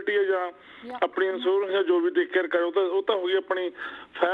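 A caller talking over a telephone line, the voice thin with nothing deep or crisp in it, with a brief pause about half a second in.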